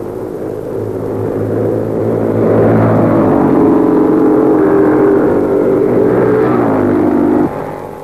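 500cc Formula 3 racing cars running at high revs with a buzzing engine note as they pass. The note grows louder about two and a half seconds in and steps up in pitch soon after. It falls a little near the end, then cuts off abruptly.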